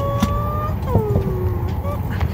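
Steady low rumble of an airliner cabin, with a voice sounding a drawn-out, nearly level note and then a falling one over it, and faint clicks of the phone being handled.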